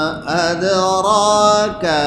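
A man's voice chanting Quranic recitation in a melodic tajweed style through a microphone. He holds a long, steady note, with short breath breaks just after the start and near the end.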